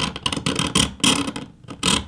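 Steel utility-knife blade scraping and scratching along the metal frame of a Surface Pro 6 tablet: a run of quick rasping scrapes and ticks, with a louder scrape near the end.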